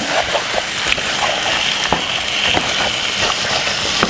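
Seasoned chicken pieces sizzling in a hot pot while a wooden spoon stirs them, a steady wet frying hiss with a few light knocks of the spoon against the pan.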